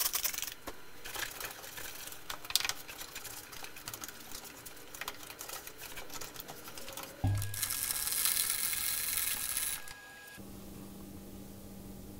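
Spray bottle spritzed and a rag wiping down the planer's plastic cover: a run of short clicks, squirts and rustles. About seven seconds in, a loud hiss starts with a thump, lasts about two and a half seconds and stops, and a steady low hum follows.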